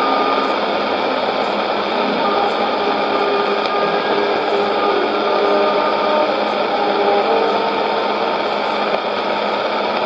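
Sony shortwave receiver on 12015 kHz AM giving a steady hiss of static from a weak, noisy signal, with faint steady tones buried in the noise.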